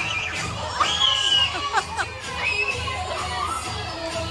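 A group of young children shouting and shrieking excitedly, with the loudest high shrieks about a second in, over party music with a steady low beat.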